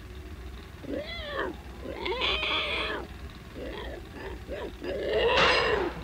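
Pig-like squeals: several short rising-and-falling animal cries, the loudest near the end, over a steady low hum.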